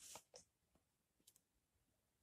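Near silence: room tone, with a few faint clicks in the first half second and one more faint tick a little after a second.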